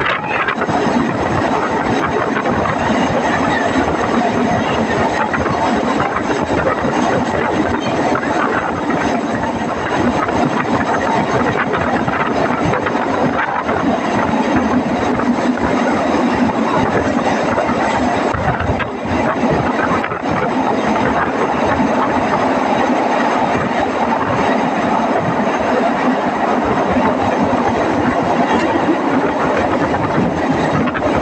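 Mariazell Railway narrow-gauge electric train running through a tunnel, heard from the train's window: a loud, steady rumble of wheels on rails and rushing air thrown back by the close tunnel walls, dipping briefly twice about two-thirds of the way through.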